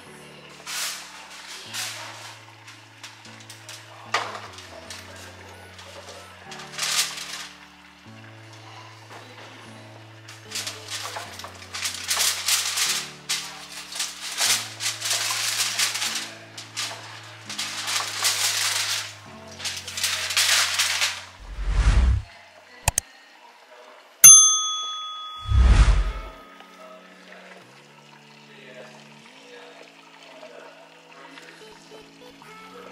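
Aluminium foil crinkling in repeated short bursts as it is peeled off a roasting pan, over background music. Near the end come a couple of dull thumps and one sharp metallic clink that rings briefly, the loudest sound, as the metal pan is handled.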